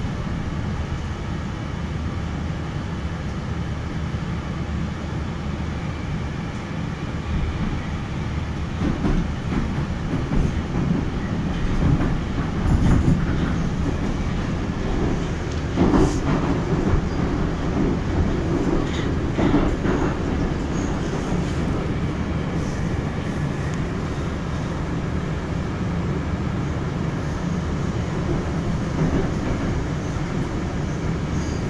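Moscow Metro train heard from inside the car as it pulls out of a station and runs into the tunnel: a steady running rumble that grows louder from about eight seconds in, with a few sharp clacks of the wheels over rail joints.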